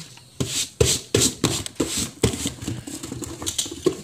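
Hands rubbing and patting self-adhesive wallpaper down onto a cardboard box: an uneven run of scuffs and light taps, about a dozen in four seconds.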